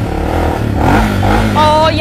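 A Honda dirt bike's single-cylinder engine running with a low rumble, its pitch rising and falling briefly about halfway through as the throttle is blipped. A woman's short "oh!" comes near the end.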